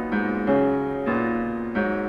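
Concert grand piano in a classical piano concerto recording: four notes or chords struck in turn, each left to ring and fade before the next.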